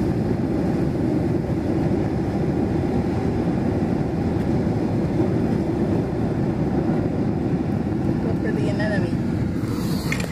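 Steady low rumble of ocean surf and wind at a rocky shoreline, unbroken throughout.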